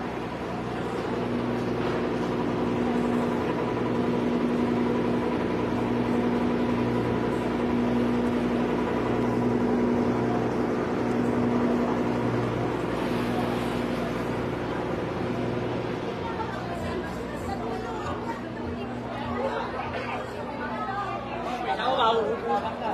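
A machine running with a steady low hum and a ladder of overtones, fading out about sixteen seconds in, over background chatter.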